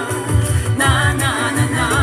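A woman singing live into a microphone through a stage PA, her voice wavering with vibrato over an amplified backing track with a steady bass beat.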